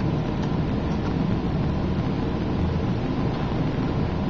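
Steady room noise, a constant low rumble and hiss at an even level, with a few faint taps of laptop keys.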